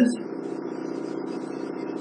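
The end of a man's spoken word, then a pause filled only by a steady low background hum in the recording.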